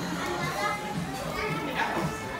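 Indistinct voices, high-pitched like a child's, with no clear words.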